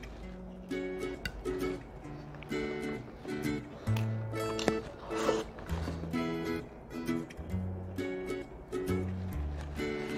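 Light background music: short plucked-string chords repeated a few times a second over a stepping bass line.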